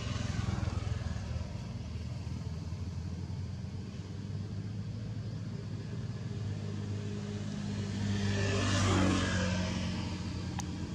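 Steady low motor hum, with a louder swell near the end that rises, peaks and fades again as something passes.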